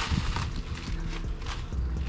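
Plastic wrapping rustling and crinkling as it is pulled by hand off a metal bash bar, with scattered short crackles over a faint steady low hum.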